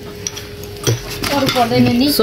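Cutlery clinking against a dish, with a voice starting about a second in.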